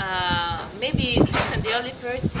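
A farm animal bleating: a long wavering call at the start, then shorter calls.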